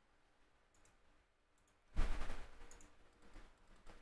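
Computer mouse clicks. Near silence, then a sharp click about halfway through, followed by fainter, irregular clicking and rustle.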